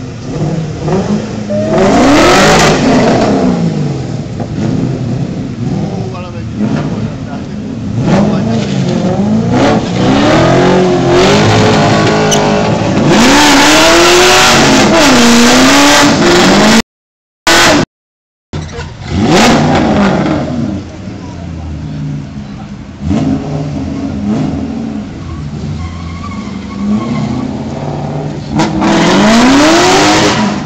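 Drift cars revving their engines hard as they pull away one after another, the engine pitch climbing and falling again and again, loudest in a long stretch just before the middle. The sound cuts out briefly just past halfway.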